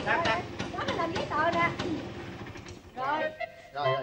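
People talking over one another, with a low steady hum underneath that fades out about two and a half seconds in.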